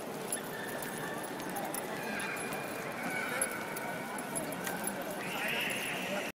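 Footsteps of a group of people walking on hard paving, with voices talking around them.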